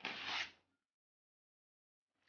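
A sheet of painted drawing paper torn by hand: one short rip of about half a second at the start.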